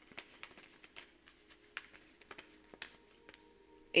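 Tarot cards being handled and one drawn from the deck: a scatter of faint, light clicks and flicks of card stock, about a dozen spread irregularly.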